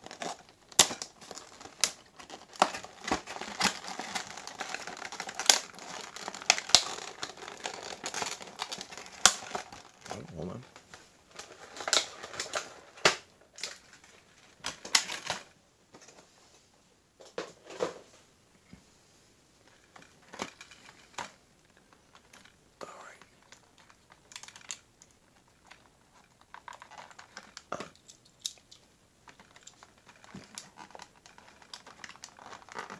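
Stiff clear plastic blister packaging of a diecast model set being handled and pried open, crinkling and crackling with sharp clicks. The crinkling is dense for the first ten seconds or so, then comes in sparser bursts.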